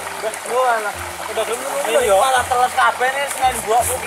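Speech only: men's voices talking back and forth.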